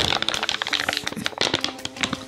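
Foil drink pouch crinkling and crackling as it is squeezed while being sipped through a straw: a quick irregular string of small clicks.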